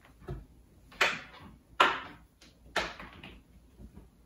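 Handling knocks from a laptop on a cloth-covered table as it is opened up and set up to switch on: a faint knock, then three sharper knocks and scrapes about a second apart, each dying away quickly.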